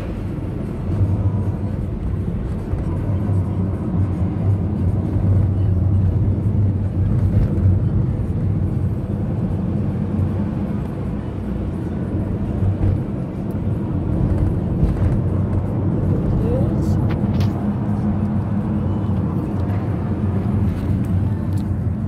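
Steady low rumble of a moving car's engine and tyres heard inside the cabin from the back seat.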